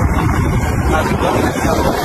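Wind buffeting the microphone over a boat's engine and churning water, recorded aboard a moving boat on open water; a steady, loud rush throughout.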